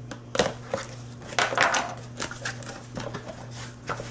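Kitchen knife slitting the tape along the top of a cardboard box in several scraping strokes, then the cardboard flaps being pulled open, with clicks of cardboard and steel.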